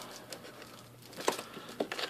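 Clear plastic shrink wrap crinkling as it is pulled off a cardboard trading-card booster box, with a few short crackles about a second in and near the end.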